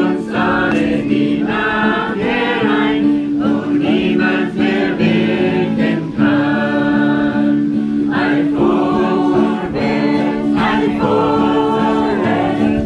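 A small group of voices singing a German hymn together to acoustic guitar accompaniment, in long held notes.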